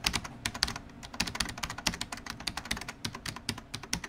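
Computer keyboard typing sound effect: a rapid, even run of key clicks, about ten a second, accompanying text being typed onto a slide.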